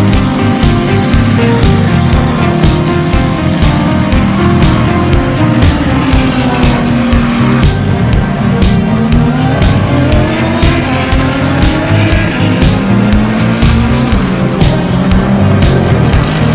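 GT race car engines passing and revving, their pitch rising and falling through gear changes, mixed with background music that has a steady beat.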